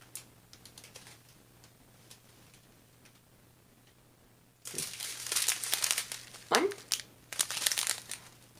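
Small clear plastic bags of resin diamond-painting drills crinkling and crackling as they are picked up and handled. The crinkling starts suddenly a little past halfway, after a quiet stretch with only a few faint ticks.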